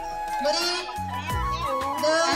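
A song with a steady, stepping bass line and held tones, with a wavering voice singing a short repeated chant over it.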